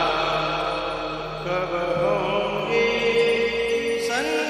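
Hindi devotional bhajan music: a held, gently wavering vocal line over steady sustained instrumental notes.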